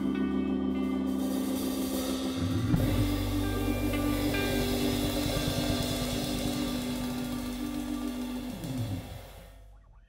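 Blues band with electric guitars, keyboard and drums ringing out the closing chord of a song, with a cymbal crash about three seconds in. Near the end the low notes slide downward and the chord fades away.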